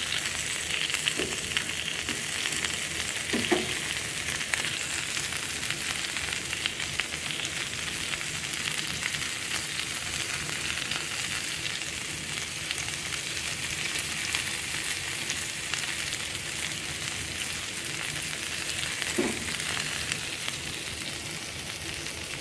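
Beef and bell-pepper kebabs sizzling steadily on a hot ridged grill pan, a continuous frying hiss with fine pops.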